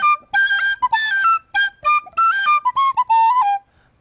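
Irish penny whistle playing a quick run of short, clear notes that step up and down like a tune phrase, stopping about half a second before the end.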